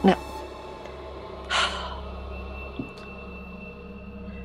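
A woman's single sharp audible breath, a gasp or heavy exhale, about a second and a half in, over a faint steady hum.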